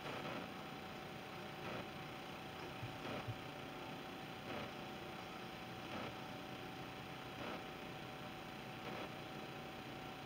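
Quiet room tone: a steady hiss with a faint steady hum, broken only by faint soft sounds every second and a half or so.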